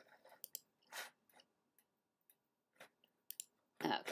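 Quiet room tone with a few faint, short computer-mouse clicks and a soft noise about a second in. A voice says 'okay' at the very end.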